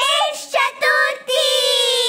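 A high voice singing a melody in short notes, then holding one long note through the second half.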